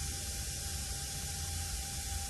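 Steady background hiss with a low hum and a faint steady tone: the room tone and noise floor of the recording.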